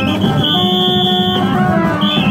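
Gagá street band music: a shrill, steady high note held for about a second, lower wavering pitched notes, and low drumming, all loud.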